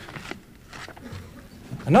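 A pause in a man's talk: low room noise with a few soft clicks, then he starts speaking again near the end.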